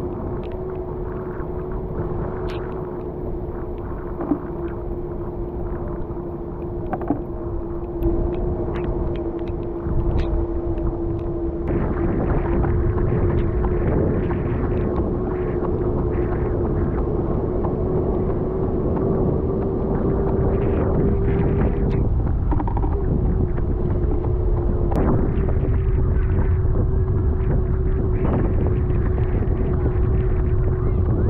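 Steady motor hum with low rumbling wind and road noise from a vehicle moving along at running pace. The rumble grows louder about twelve seconds in. The hum's pitch rises slightly for a moment before settling back.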